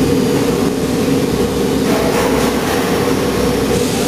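Steady, loud drone of a 900-tonne STP high-pressure aluminium die-casting machine running, deep in pitch and without distinct strokes or impacts.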